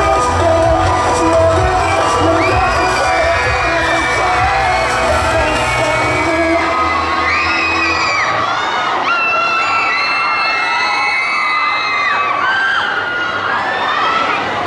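A K-pop dance track with a heavy bass beat playing over a stage PA, stopping about halfway through, followed by a crowd's high-pitched screams and cheers.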